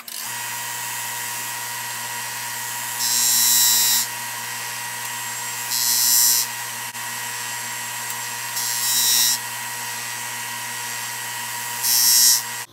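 A small bench disc sander is switched on and runs with a steady electric-motor hum. Four times a small wooden sill piece, held in a jig, is pressed against the disc. Each press gives a rasping hiss of under a second as the end is ground square.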